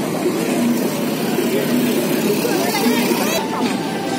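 Crowd chatter mixed with the steady running of engines.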